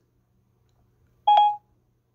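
Near silence, then about a second and a quarter in, Siri's short electronic chime from an iPad: one brief, steady tone lasting about a third of a second.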